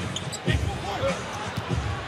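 Basketball bouncing on a hardwood court: a few dull thumps about half a second apart as the ball is dribbled up the floor.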